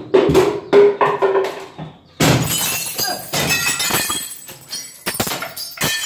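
Window glass breaking as a man forces his way out through a kitchen window: a sudden crash about two seconds in, then broken glass clinking and ringing for a couple of seconds. There are sharp knocks before the crash and again near the end.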